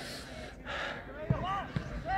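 Two dull thuds a little under half a second apart, about a second in, typical of a football being kicked on an artificial pitch. Players are shouting in the distance at the same time.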